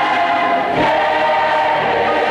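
A gospel mass choir singing, many voices holding full chords, moving to a new chord about a second in. The recording is from 1969.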